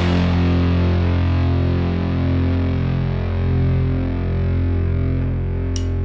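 Instrumental heavy psych stoner rock: a distorted electric guitar chord held and left ringing, with an effects wobble, slowly fading, and no drums. A short cymbal tick comes near the end.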